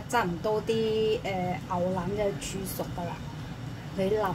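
A woman speaking, in short phrases with brief pauses, over a steady low hum.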